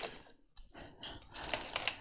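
Hard clear plastic Craftmates lockable storage containers clicking and clacking as they are handled and set down: a few light knocks, a short lull, then a quick run of clicks in the second half.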